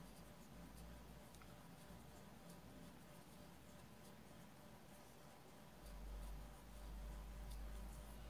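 Near silence, with faint rustling and small scattered ticks of a 2.5 mm metal crochet hook pulling yarn through a magic ring.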